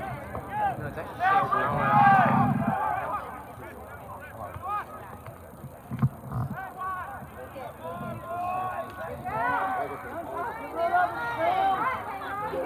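Indistinct calls and chatter of several overlapping voices from players and spectators at an outdoor soccer game, with one sharp knock about six seconds in.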